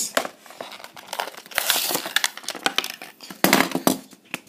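Plastic blister packaging and its cardboard backing crinkling and clicking as a diecast car is pulled out. Irregular handling noise, with a long burst of crinkling about a second and a half in and another near the end.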